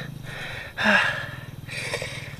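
A man's hard, pained exhale with a short grunt about a second in, then another sharp breath near the end. He is hurting from a fall off his mountain bike.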